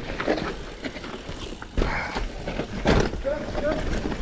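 Mountain bike rolling down a rough dirt trail: tyre noise and frame and drivetrain rattle, with sharp knocks about two and three seconds in, under wind noise on the microphone.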